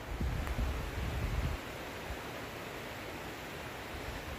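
Steady rushing hiss of a river flowing below in the forest. An uneven low rumble on the microphone lasts for about the first second and a half, then stops.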